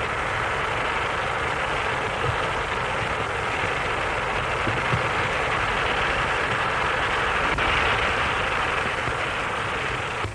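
Steady hiss and rush of steam from a steam locomotive and steam shovel at work, even in level throughout.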